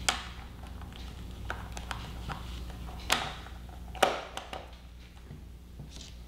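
Holding clips being fitted back onto a vacuum floor tool's squeegee strips: a handful of sharp clicks and knocks, the loudest about three and four seconds in, over a steady low hum.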